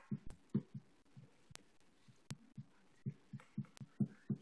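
Quiet room sound of short, irregular, muffled low thumps and murmurs that cut in and out, with a few sharp clicks.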